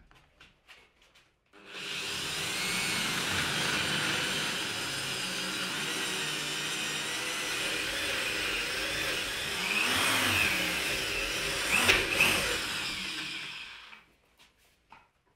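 Power drill mounted in a drill guide boring a large hole into a hardwood workbench top. The motor starts about a second and a half in and runs steadily with a high whine. Its pitch wavers and it grows louder as the bit cuts, loudest shortly before it stops near the end.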